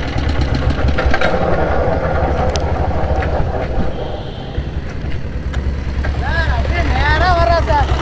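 Royal Enfield diesel Bullet's single-cylinder diesel engine running steadily under way with a low, even pulse, easing off a little midway. A voice is heard over it near the end.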